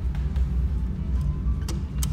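A steady low rumble of indoor ambience, with a couple of sharp clicks near the end as a metal elevator call button is pressed.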